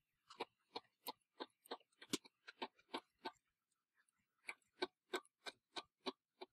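Faint, quick clicks of a knitting machine's metal needles, about three a second, as yarn is wrapped around them one by one for a cast-on. There is a pause of about a second past the middle.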